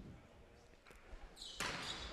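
Quiet indoor gym with a faint smack of a volleyball being struck on a serve about a second in; general court noise rises near the end.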